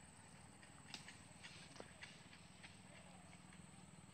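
Near silence, with a few faint, irregular clicks.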